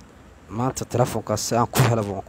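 A man's voice close to a wired earphone microphone, quiet for the first half second, then coming in quick broken bursts.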